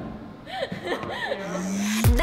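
Pop music playback breaks off at the start, leaving a quieter stretch with a few short voice sounds and light laughter, then a drawn-out rising voiced tone near the end.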